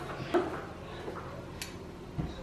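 Faint handling sounds of cookie dough being worked on a table, with one light knock about a third of a second in and a brief soft scrape later.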